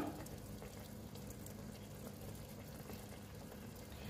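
Black figs simmering in sugar syrup in a pot, a faint steady bubbling of fig jam on the boil.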